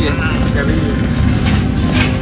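Steady low rumble of street traffic at a roadside, with no clear separate passes.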